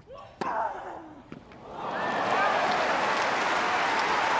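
Tennis ball struck by rackets on a hard court, a sharp hit about half a second in and a lighter one around 1.3 s, with a player's grunt. The point ends and a stadium crowd breaks into cheering and applause that builds from about two seconds in and holds loud.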